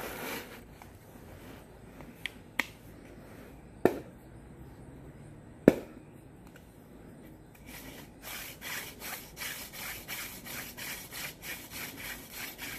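A few sharp knocks while a wooden hand-drill spindle is set into the notch of the hearth board. Then, about eight seconds in, steady rhythmic rubbing starts as the palms spin the spindle back and forth at the top of the shaft, about three to four strokes a second, with the wooden tip grinding into the board.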